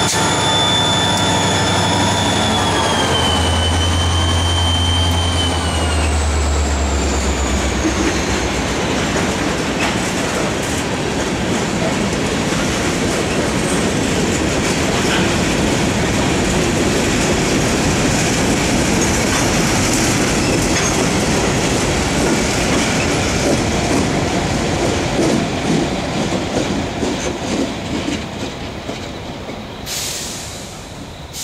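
Freight train passing. A diesel locomotive's whine and low engine hum drop in pitch and fade over the first several seconds as it moves away. Then the steady rolling rumble and rattle of covered hopper cars goes on, dying away near the end as the last cars go by.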